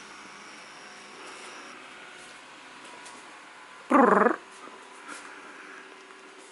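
A domestic cat, angry at being kept indoors, lets out one short, loud cry about four seconds in.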